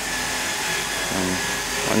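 Steady mechanical noise of a motor running in the background, an even hiss with a faint high steady whine, under a brief spoken word about a second in.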